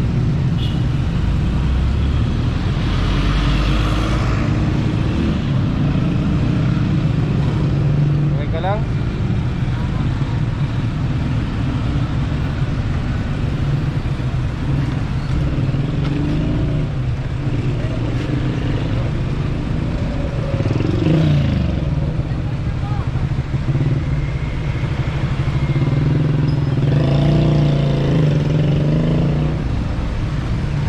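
Road traffic: a steady motor-vehicle engine hum, with a vehicle's pitch rising and falling as it passes about two-thirds of the way in.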